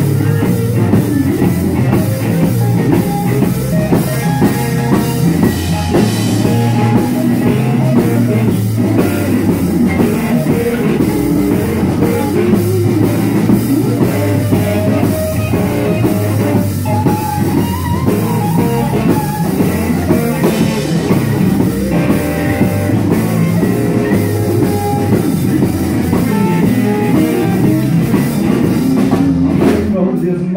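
A live rock band playing an instrumental passage: drum kit, electric guitar and bass guitar, loud and steady, with no singing.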